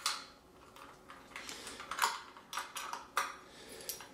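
Small metal parts of a 1908 Testophone horn's nickel-plated valve housing clicking and scraping as its cap is undone and lifted off. A sharp click comes right at the start, and a few more come between about two and three seconds in.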